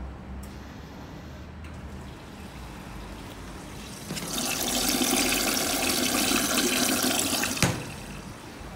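Commercial front-loading washing machine in its wash cycle. A low steady hum runs for the first half. About four seconds in, a loud rush of water in the drum starts, and it stops abruptly with a click shortly before the end.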